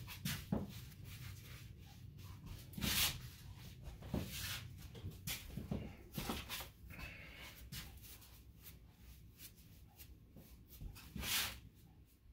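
Irregular soft rustles and handling noises of a barber working at the nape after a haircut, louder brushes about three seconds in and again near the end.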